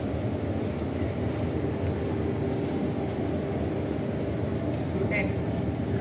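Steady low mechanical rumble with a faint steady hum, unchanging throughout, typical of ventilation or refrigeration running in a commercial kitchen or buffet area.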